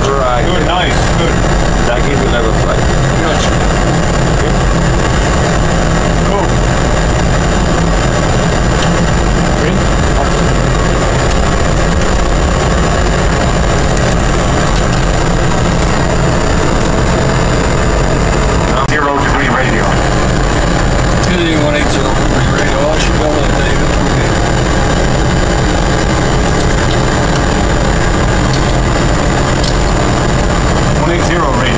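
Steady loud rush of jet engine and airflow noise on a Boeing 777 flight deck, with a low hum under it and a thin high whine. Muffled voices come through faintly about twenty seconds in.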